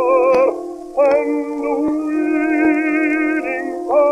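Early acoustic-era gramophone recording (1911, 78 rpm disc) of a baritone song with small orchestra: pitched lines with heavy vibrato, a brief break about a second in, then a long held chord.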